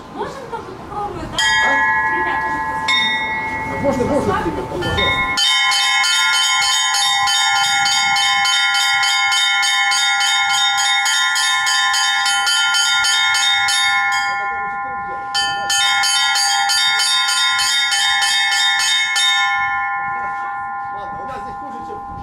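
Small Russian Orthodox chiming bells struck by rope: a few single strokes, then fast continuous chiming from about five seconds in, a short break near the middle, a second run of fast chiming, then the bells ring on and fade near the end.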